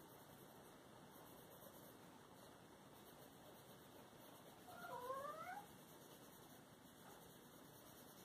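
A cat's short meow, rising in pitch, about five seconds in, against near silence.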